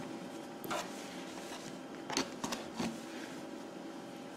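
Faint rustle of yarn and a few soft ticks as a crochet hook works red yarn between the fingers, over a faint steady room hum.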